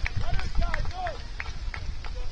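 Soccer players shouting short calls to each other across the pitch in the first second or so, over a steady low rumble, with a few sharp knocks.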